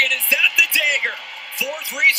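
Sports commentary speech with music underneath.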